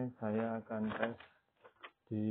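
A man speaking, then a few light clicks near the end as knives are handled on a wooden bench.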